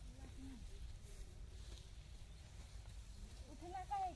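Wind rumbling on the phone's microphone in an open field, with faint distant voices, a little louder near the end.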